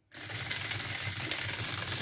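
Pair of 300 RPM DC gear motors driving the robot car's wheels, switching on just after the start and running steadily with a whirring buzz: the robot's forward command, set off by a one-finger hand gesture.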